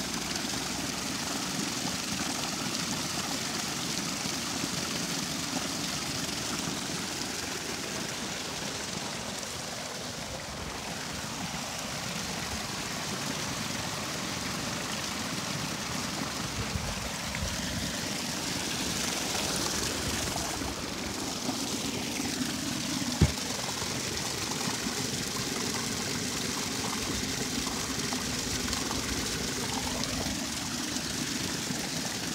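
A high flow of water pouring off the end of a wooden flume onto a small wooden waterwheel and splashing into the channel below: a steady rush of falling, churning water. One sharp knock about three-quarters of the way through.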